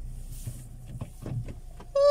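Low, steady rumble of a car heard from inside the cabin, with a few soft clicks and knocks from the phone being handled.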